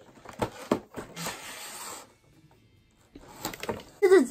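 Cardboard toy box and its plastic packaging being handled and opened: several sharp taps and clicks, then about a second of rustling, a short near-silent gap, and more clicking near the end.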